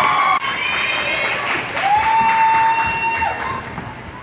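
Spectators at an ice hockey game cheering and yelling, with one voice holding a long high shout for about a second and a half in the middle.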